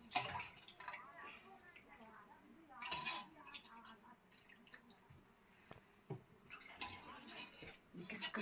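Faint kitchen sounds: a steel ladle clinking against the cooking pot and dal being ladled onto a steel plate of rice, with a sharp clink right at the start and another about six seconds in. Soft, low voices come and go.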